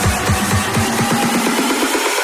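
Background electronic dance music with a fast, repeating bass pulse that falls in pitch on each beat, about five a second. The bass drops out about two-thirds of the way through while the upper part of the track plays on.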